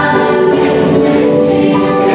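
A large mixed choir of graduating students singing a slow song in long held chords, the harmony moving to new notes shortly after the start and again near the end.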